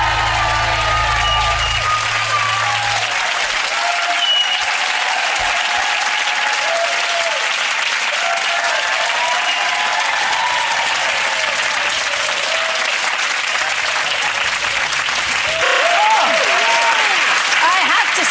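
Studio audience applauding steadily, with scattered shouts and whoops, as the last held notes of the song die away in the first few seconds. Near the end a voice starts over the applause.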